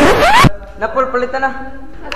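A quick rising whoosh of a glitch transition effect over the last of the music, which cuts off suddenly about half a second in. People talking follows.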